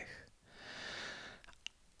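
A person drawing a deep, audible breath in, lasting under a second, as the breath before reading a sentence aloud, followed by one short click.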